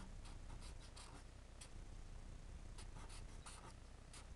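Marker pen drawing on paper in short, faint strokes: a run of them in the first second and another run about three seconds in.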